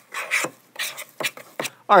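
A spoon stirring thick salt-and-flour dough in a stainless steel pot: a run of short, irregular scraping strokes.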